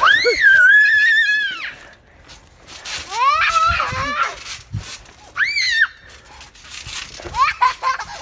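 Children shrieking and squealing in play: one long high squeal at the start, a falling shriek about three seconds in, a short high shriek a little after five seconds, then giggling and chatter near the end.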